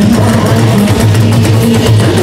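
Live band music: a loud, steady bass line with guitar and percussion.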